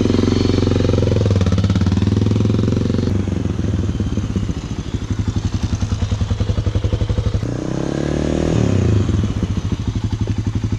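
Honda XR400R single-cylinder four-stroke dirt bike engine running close by as the bike pulls away. It runs steadily at first, then pulses unevenly at low revs through the middle. About seven and a half seconds in it revs up briefly, its pitch rising and then dropping back.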